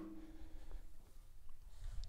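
Quiet room tone with faint handling of metal parts: a low metallic ring dies away within the first second, and a light tap follows about a second and a half in.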